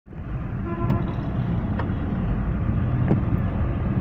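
Low, steady rumble of car engine and traffic heard from inside a car's cabin in slow-moving traffic, with three faint clicks.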